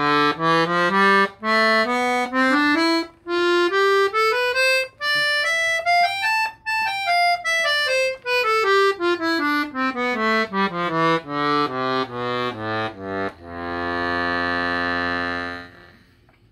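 Salanti piano accordion with hand-made reeds, played on its bassoon register: a scale of single notes climbs step by step for about six seconds and comes back down, then a long chord is held for about two and a half seconds near the end.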